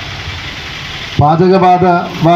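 A man's voice amplified through a microphone and loudspeaker, starting about a second in after a pause filled with steady background noise.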